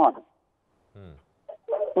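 A man's voice over a telephone line: his words break off, and after a short pause comes a brief, faint low sound gliding down in pitch about a second in, before he speaks again near the end.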